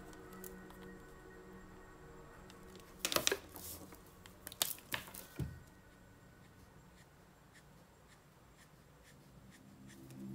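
Plastic Copic marker handling: sharp clicks and knocks about three seconds in and again around five seconds, as a cap is pulled off and a marker is set down on the desk, followed by faint ticks of the marker tip on paper. Faint instrumental music fades out.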